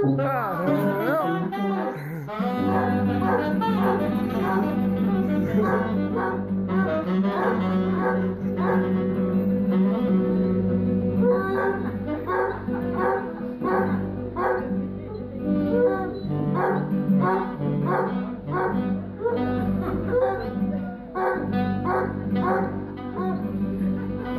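A jazz trio of sousaphone, saxophone and acoustic guitar playing an instrumental tune, the sousaphone carrying a pulsing bass line. A basset hound howls along, with wavering cries most plain near the start.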